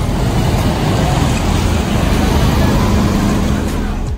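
Loud, steady road-traffic noise with a dense hiss, cutting off abruptly at the end.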